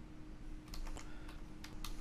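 Faint typing on a computer keyboard: several separate key clicks.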